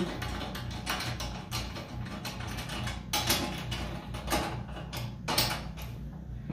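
Hand ratchet clicking in short runs of strokes as the door-bracket bolts are turned, over quiet background music.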